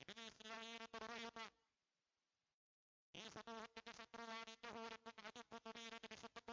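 A faint, buzzy voice-like sound with a wavering pitch, heard in two stretches with a short dropout to silence between them.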